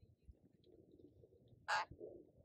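Sun conure giving a single short, harsh squawk near the end.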